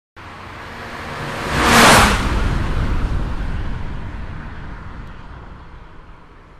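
A car passing at speed: the sound swells to a loud peak about two seconds in, then fades slowly away.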